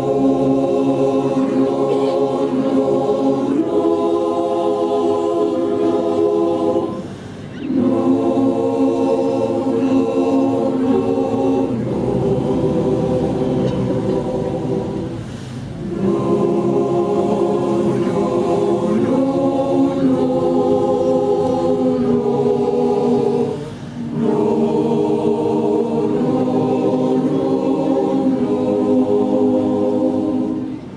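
Mixed adult choir singing a cappella in sustained chords, in phrases of about eight seconds each separated by brief breaths.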